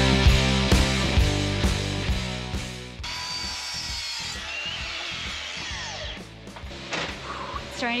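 Power tools at work over guitar music: a loud rough hiss for about the first three seconds, then, after a cut, a steadier quieter run with a thin high whine from a cordless sliding miter saw.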